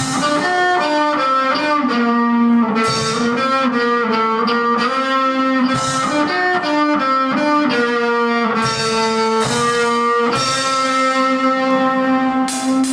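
Electric guitars played live through amplifiers, picking a melodic single-note riff that steps from note to note over held lower notes.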